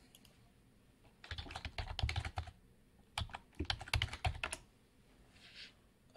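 Typing on a computer keyboard: a quick run of keystrokes about a second in, a short pause, then a second run around three seconds in, as a web address is typed.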